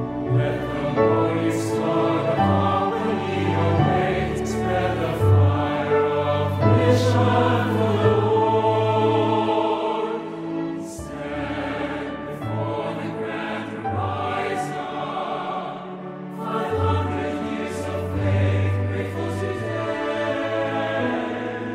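Music: a choir singing a devotional song.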